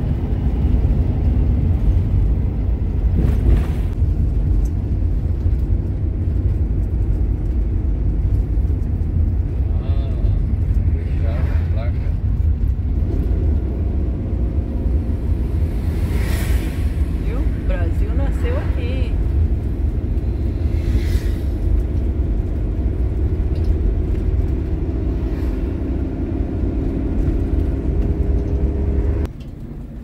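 Steady low rumble of engine and road noise inside a moving motorhome's cab, with a few faint, brief higher sounds now and then. It drops off suddenly near the end.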